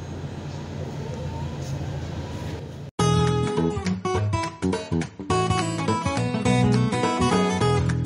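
Low steady background noise for about three seconds, then after a sudden cut, background music of plucked acoustic guitar starts and plays on loudly.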